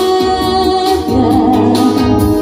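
A woman singing a song over instrumental accompaniment. She holds a note, then moves to new notes about a second in.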